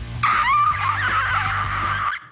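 A man's high-pitched, wavering scream, held for nearly two seconds as a comic vocal warm-up, over quiet background music.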